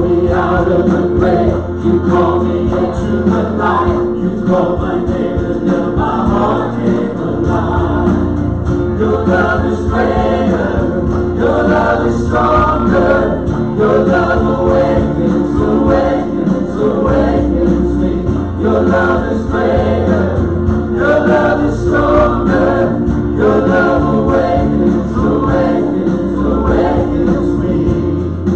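A live worship band singing a gospel song together, several voices over acoustic guitar and a keyboard holding sustained low notes.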